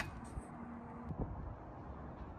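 Quiet background noise with a few faint, isolated clicks and a brief faint hum; no bolt-tightening or ratchet clicking is heard.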